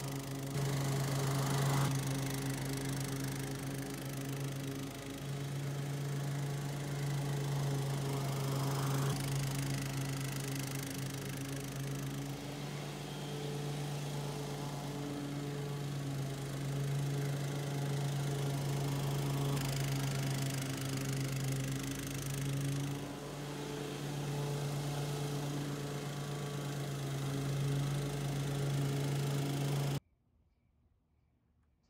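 Toro 30-inch TurfMaster HDX walk-behind mower running steadily while cutting grass. Its Kawasaki single-cylinder engine holds a steady note that shifts slightly as the load changes.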